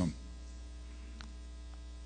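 Steady low electrical mains hum in the recording.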